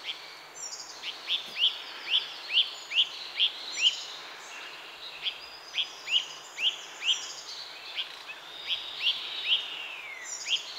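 A small bird calling in runs of short, sharp, falling high notes, about two a second, with pauses between the runs, over a steady background hiss.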